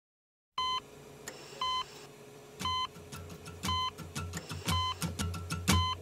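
Heart-monitor beep, a short tone repeating once a second, six times, over a faint steady hum, as the intro of a recorded rock song. From about halfway, a low pulsing beat and clicks build beneath the beeps.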